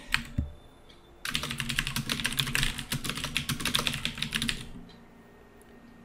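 Rapid typing on a computer keyboard: a quick, steady run of keystrokes starting about a second in and stopping a little before five seconds.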